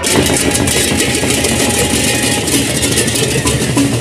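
Gendang beleq ensemble playing, dominated by a dense, rapid clashing of ceng-ceng hand cymbals with drumming underneath. Near the end, pitched kettle-gong notes come in.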